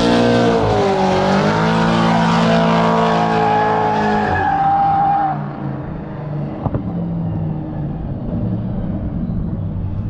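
Drift cars' engines running at high revs, their pitch sweeping up and down, over a steady hiss of tyre noise. About five seconds in, the sound drops to a quieter, more distant engine drone, with a single sharp click soon after.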